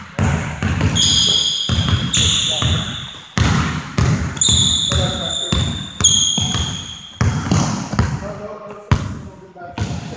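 Basketball dribbled on a hardwood gym floor, the bounces coming about once a second and ringing in the hall, with sneakers squealing on the wood four times as players cut and stop.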